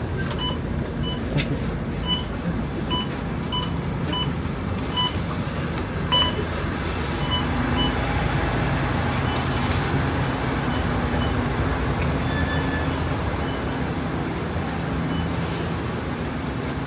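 Short electronic beeps repeating about once or twice a second, from bus fare-card readers as passengers tap out while getting off, over the bus's low engine rumble and crowd noise. The beeps stop after about seven seconds, leaving a steady low hum.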